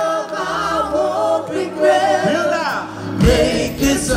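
A live pop-soul chorus sung by many voices together, the audience joining the singers on stage, over a thin backing with the drums and bass dropped out. About three seconds in, the drums and bass come back in with a steady beat.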